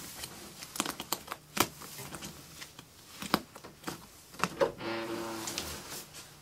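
Irregular clicks, taps and knocks of a person rummaging by hand, handling small objects while searching, with a short steady pitched sound about five seconds in.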